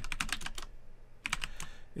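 Computer keyboard being typed on: quick runs of key clicks, with a short pause about halfway through.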